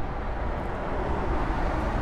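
Road traffic going by: a steady rushing noise with a low rumble that swells slightly midway.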